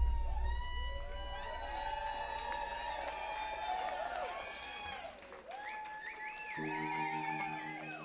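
Live band music, quiet and drawn out: a loud low bass note rings at the start and fades while long, gliding high notes carry on. About six and a half seconds in, a low held chord comes in under a wavering high note.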